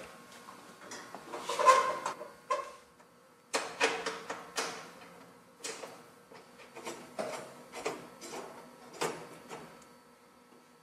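Wire shelf supports clicking and clanking against the stainless steel oven chamber of a countertop convection oven as they are fitted back in by hand. The metal knocks are irregular, with a faint ring after them, and the loudest comes about two seconds in.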